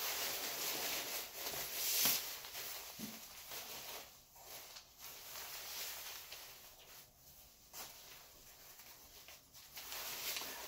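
Rustling of a lightweight waterproof down jacket's thin shell fabric as the hood is pulled up over the head and adjusted by hand. The rustle comes and goes, loudest about two seconds in and fainter through the second half.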